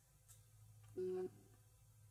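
A short, steady beep about a second in, lasting about a third of a second, over a faint low hum.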